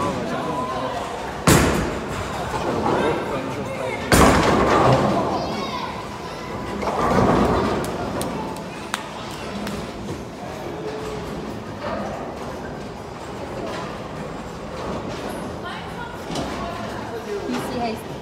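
Bowling alley sounds: a sharp crash about a second and a half in and a louder one about four seconds in, followed by a second or two of clatter, typical of balls striking pins. Voices carry in the background.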